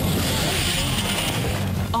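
A motorcycle crash heard from the rider's helmet camera: a steady rush of noise as a sportbike slides off the track and across the grass.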